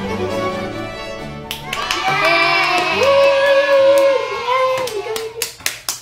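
A baroque string orchestra plays the closing bars of a piece, cut off about a second and a half in, followed by children cheering with one long held shout and then a few claps near the end.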